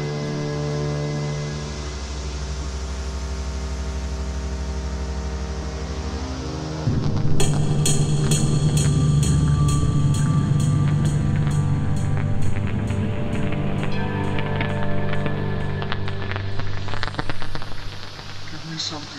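Live electronic music from synthesizers and a pad sampler: held synth chords over a low bass drone, then about seven seconds in it gets louder as a steady ticking beat and heavier bass come in.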